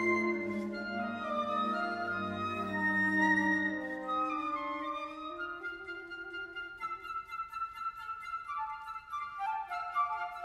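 A flute septet (piccolo, concert flutes, alto flute and bass flute) playing classical chamber music in several parts. Low sustained notes under the upper voices give way, about halfway through, to quick short repeated notes over held high tones.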